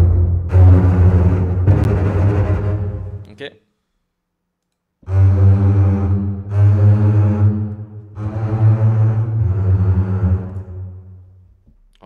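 Sampled chamber double basses (Spitfire Audio Chamber Strings, Basses patch) playing long bowed low notes in two phrases: one ends about three and a half seconds in, and the second starts about a second and a half later and steps through a few pitches. The reverb is recorded into the samples.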